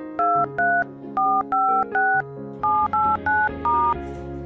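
Touch-tone phone dialing: short two-tone key beeps in quick groups of three, three and four, like a phone number being keyed in. Background music plays underneath.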